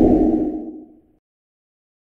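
A low whoosh sound effect from an outro logo animation, fading out within about a second, then silence.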